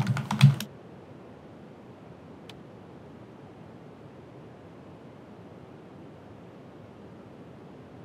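Computer keyboard keys clacking in a quick run for well under a second, then steady low room hiss with a single faint click.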